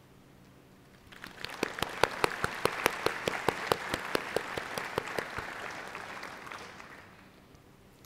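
Audience applauding in a large theatre. The applause starts about a second in, swells with a few sharp, loud claps close by, and fades out by about seven seconds.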